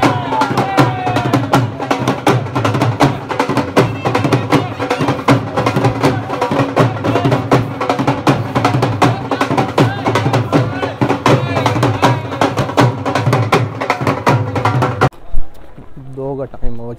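Loud, fast drumming with music, played for dancing, with dense, rapid strokes throughout. It cuts off abruptly about fifteen seconds in.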